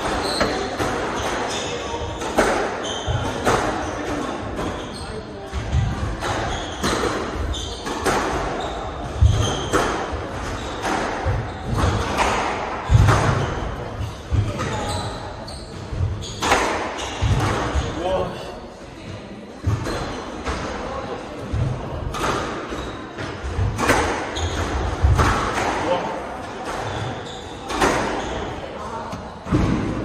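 A squash rally: the ball is struck by rackets and hits the court walls in a string of sharp impacts, about one or two a second.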